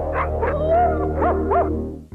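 A dog whining and yelping: several high, sliding whines, then two short sharp yelps about a second and a half in, over a low steady drone.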